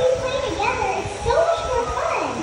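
A young child's voice babbling, its pitch rising and falling.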